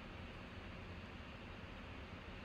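Faint steady hiss of room tone, with no distinct sound event.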